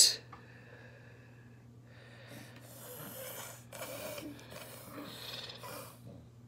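A baby breathing noisily through the nose with a mouthful of food: a few faint, breathy snuffles in the second half.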